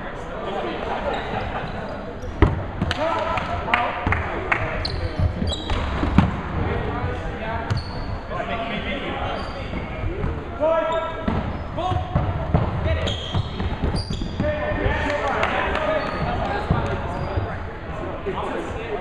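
Dodgeballs being thrown and hitting and bouncing on the wooden floor of a large sports hall, with players shouting and calling throughout. The sharpest impact comes about two and a half seconds in.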